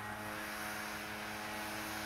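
Steady drone of a distant small engine, a leaf blower, holding one even pitch under a light hiss of wind.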